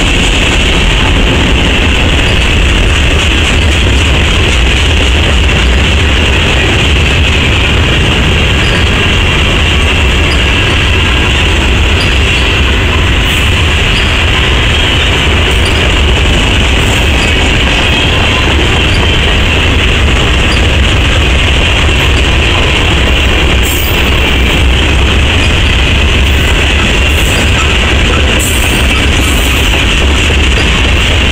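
Freight cars of a long CSX mixed freight train rolling past at close range: a loud, steady rumble and rattle of steel wheels on the rails, with faint light ticks scattered through it.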